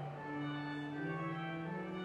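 Pipe organ playing slow, sustained notes that change every half second to a second.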